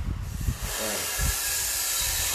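A steady hiss that sets in about half a second in and holds at an even level.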